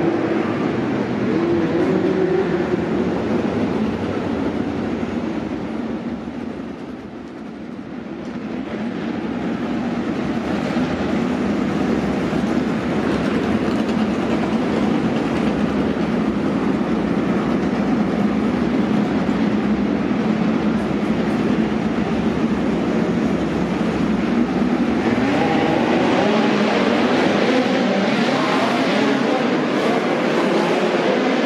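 Midget race car engines running at speed on a dirt track. The sound fades about seven seconds in and then builds again. Near the end the engine pitch rises and falls as the cars pass.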